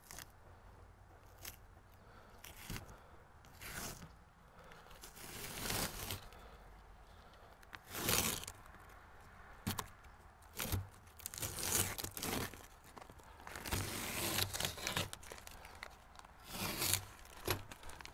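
Masking tape and masking paper being peeled off a shed vent and crumpled by hand, in irregular short bursts of tearing and rustling.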